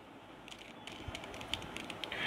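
Faint, scattered plastic clicks of a 3x3 mirror cube's layers being turned and handled in the hands, starting about half a second in.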